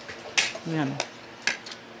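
Metal spoon and fork clinking against plates while eating: three sharp clinks about half a second apart, the first the loudest.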